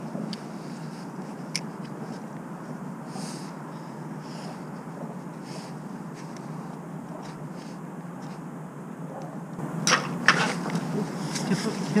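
A steady low outdoor rumble with a few faint clicks, then a cluster of sharp, loud clicks and knocks near the end.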